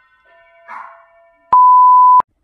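An edited-in TV test-card tone: one loud, steady, high beep that starts suddenly about one and a half seconds in and cuts off abruptly, the classic 'please stand by' colour-bar signal.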